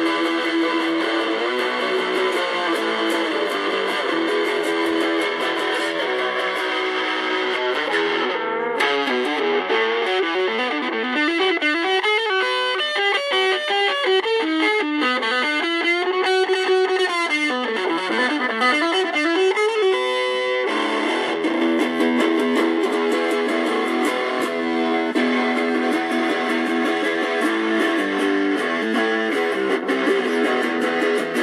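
Electric guitar played through a small homemade battery-powered all-valve combo amplifier with DL96 valves, turned fully up. It is strummed chords at first, then from about nine to twenty seconds in, bending, wavering single notes, then strummed chords again. The sound is thin, with almost no deep bass.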